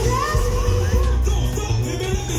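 Live band music played loud through a concert sound system, with heavy bass, and crowd voices over it.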